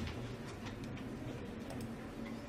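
Faint light clicks over quiet room tone, from a laptop's keys or mouse as the slides are advanced.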